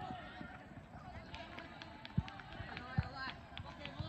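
Open-air ambience of a football match: distant voices of players calling across the pitch. A run of light ticks comes in the second half, with two dull thuds about two and three seconds in.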